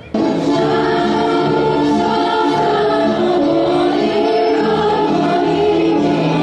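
A group of women singing a folk song together in long, held notes. The singing starts abruptly just after the start, cutting in over the end of a spoken reading.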